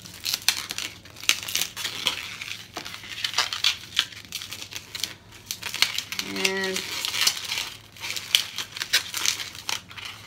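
Inflated green 160 latex modelling balloon being twisted into small bubbles and micro pinch twists: the latex rubbing and crinkling against the fingers in many short, irregular scrapes.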